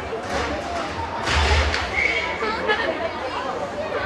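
Ice hockey rink ambience: scattered voices and chatter echoing in the arena over a steady background noise, with a few short scraping noise bursts, the loudest about a second in.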